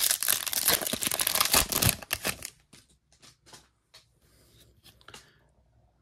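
A trading-card pack wrapper being torn open, a dense crinkling tear for about two seconds, followed by a few faint clicks and rustles.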